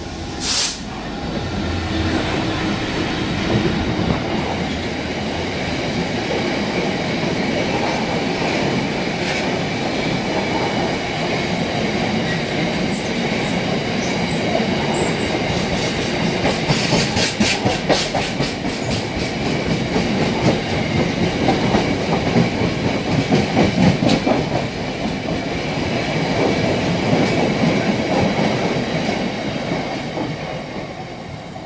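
A GB Railfreight Class 66 diesel locomotive passes close by, its two-stroke V12 engine audible in the first few seconds, with a brief sharp burst of noise about half a second in. A long rake of bogie box wagons then rolls past with a steady rumble, clickety-clack over the rail joints and a few faint high wheel squeaks.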